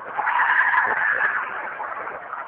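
A long high-pitched shriek, held for about a second, from the unidentified swamp noise that the locals variously put down to foxes, a female coyote or Sasquatch.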